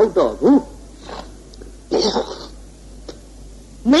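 A monk's voice giving a Burmese-language sermon stops after about half a second. In the pause that follows comes one short, rough sound about two seconds in, with a few fainter small sounds around it.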